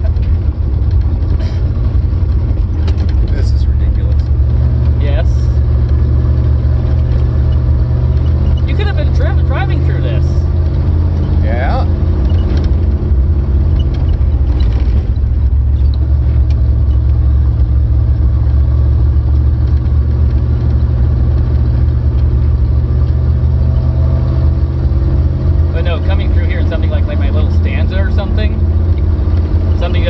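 Steady low rumble from a roofless car driving on a rough dirt road: engine, wind and road noise heard inside the open cabin. Short bits of voices come through a few times.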